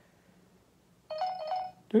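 Canon VIXIA HF W10 camcorder's power-on beeps as it switches on when its screen is flipped open: a quick run of short electronic beeps starting a little over a second in and lasting under a second.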